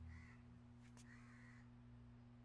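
Faint cawing of crows in the background, two calls, over a quiet room tone with a steady low hum.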